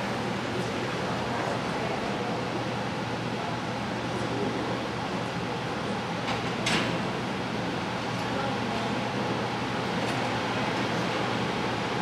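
Steady background noise of a large indoor hall: an even ventilation hum with faint murmur from people, and one brief sharp sound about six and a half seconds in.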